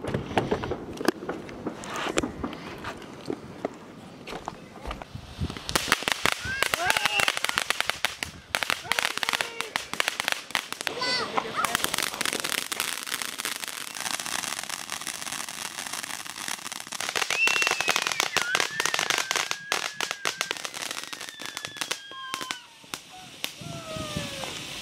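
Consumer ground fountain fireworks spraying sparks, with dense rapid crackling that starts about five seconds in and carries on through most of the rest, over voices.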